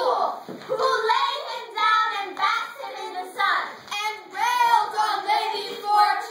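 Children singing.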